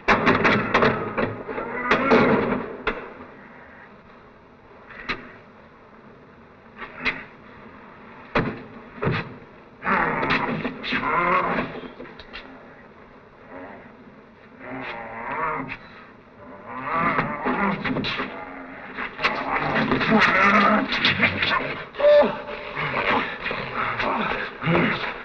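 Wordless vocal growls, grunts and cries in repeated bursts from the monster and the men struggling with him, loudest near the start and through the last third.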